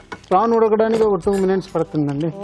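Speech only: a person talking, with no other sound standing out.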